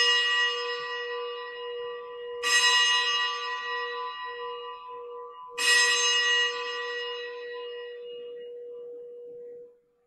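A bell struck three times, about three seconds apart, each stroke ringing on and slowly dying away before the next. The last ring is cut off suddenly near the end. It is the bell rung at the elevation of the consecrated host during Mass.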